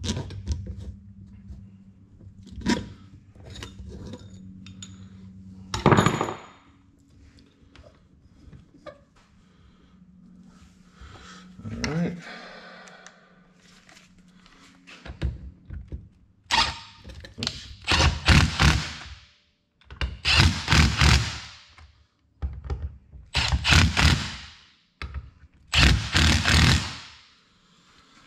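Cordless impact driver running bolts into a cast thermostat housing in about five bursts of one to two seconds each, starting past the middle. Before that come light clicks and knocks of bolts being set by hand over a steady low hum.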